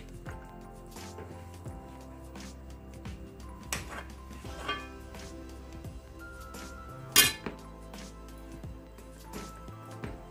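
Background music playing steadily, with a few sharp clinks of a metal spoon against the pan of potato filling as filling is scooped out, the loudest about seven seconds in.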